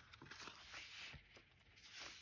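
Near silence, with faint rustles and soft taps of paper as the pages of a handmade junk journal are handled and turned.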